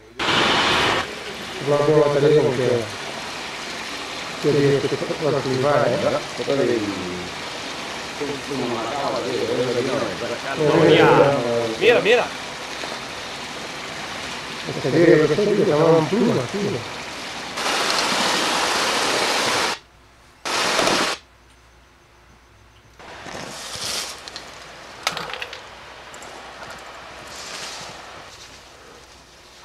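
Camcorder footage played back with a constant hiss and voices speaking Spanish in short stretches. In the second half come several loud bursts of noise, the longest lasting about two seconds.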